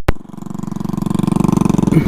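Royal Enfield Meteor 350's single-cylinder engine pulling away, its even exhaust beat growing louder over the first second and a half. A sharp click comes at the very start.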